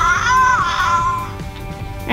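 Grimlings 'Scaredy Cat' interactive toy answering a hand clap with one high-pitched squeaky creature call, gliding up and then down for about a second.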